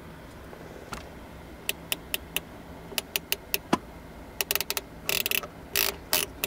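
Detented channel-selector knob of a Stryker SR-955HP CB/10-meter radio clicking as it is turned step by step, in two groups of about four clicks and then a faster run near the end.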